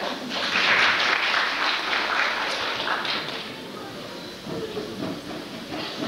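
Audience applauding for about three seconds, then a quieter stretch of hall noise.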